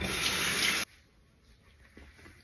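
Water running from a bathroom sink tap as a face is washed: a steady rush of water that starts suddenly and stops abruptly after just under a second.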